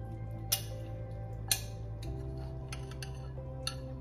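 Background music with sustained low notes, with two sharp clinks about a second apart and a fainter one near the end: a metal spoon knocking on a glass bowl as fish pieces are lifted out.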